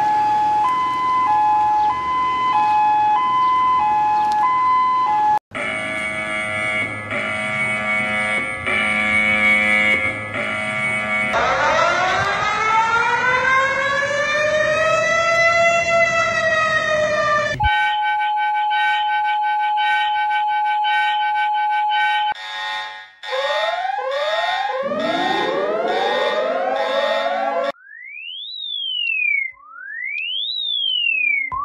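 A run of emergency alert alarm tones, one after another, changing every few seconds. First come alternating two-note beeps, then a pulsing chord of tones, then a slow rising-and-falling siren wail from about eleven seconds in. After that a steady tone, then rapidly repeated upward sweeps, and near the end a fast up-and-down sweeping siren.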